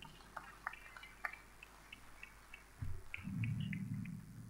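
Faint, distant batucada (Brazilian street drumming) heard through a hall: scattered sharp percussion hits, with a low drum-like thud about three seconds in.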